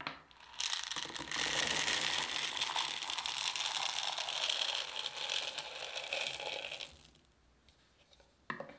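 Small round pie weights poured into a parchment-lined tart tin: a dense, continuous rattle of many beads clattering against each other and onto the paper. It starts about half a second in and stops about a second before the end.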